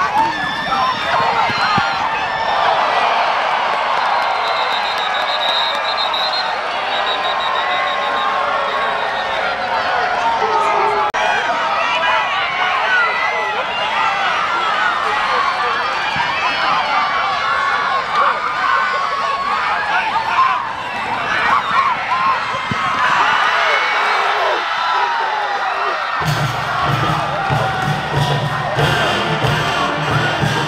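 Football stadium crowd cheering and shouting, many voices at once. Near the end a marching band in the stands starts playing, with low brass and drum strokes.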